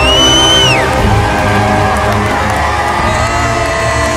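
Live worship music with a crowd cheering over it. A shrill whoop right at the start glides down, holds, and drops away before the first second is out.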